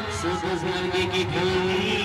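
Amplified brass band sound: a held, wavering note over a steady low drone as the band's music gets going.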